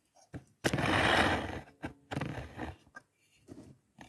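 A paper magazine being handled on a wooden table: a loud rustling slide of about a second, then softer rustles, with a few sharp clicks in between.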